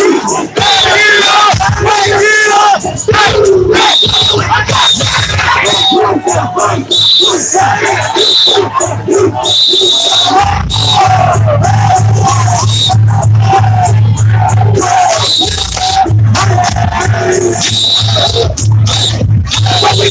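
Loud hip hop music over a crowd of men chanting and yelling, with short, high whistle blasts again and again. A heavy bass beat comes in about halfway through.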